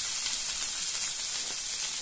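Strips of green and red bell pepper frying in hot olive oil in a frying pan: a steady sizzle.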